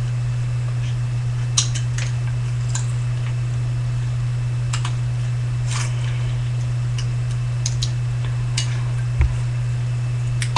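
Scissors cutting thin aluminum soda-can sheet: short, crisp snips at irregular moments, roughly one a second, over a steady low hum.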